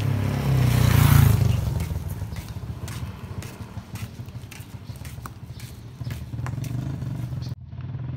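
A motor vehicle engine passing close by, loudest about a second in, then running on as a steadier, quieter hum, with scattered light clicks. The sound cuts off abruptly near the end.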